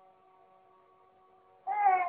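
A cat meowing once near the end: a single short call that rises slightly and then falls in pitch, over faint steady tones.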